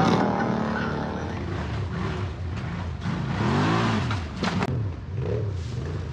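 ATV engine revving up and down in pitch as the quad ploughs through deep water, over a rushing noise of spray.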